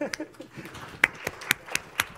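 Light applause from a small audience, with one person's sharp hand claps standing out about four times a second from about a second in.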